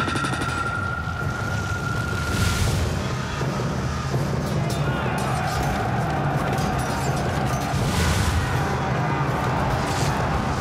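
Dramatic film-trailer music mixed with battle sound effects: a high note held for the first couple of seconds over a dense low rumble, with heavy booming hits about two and a half seconds in and again near eight seconds.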